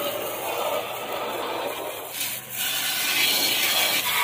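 Water jet from a Proffix 12 V DC pressure washer spraying onto a car's lower body panel and wet concrete, a steady hiss that dips briefly about two and a half seconds in.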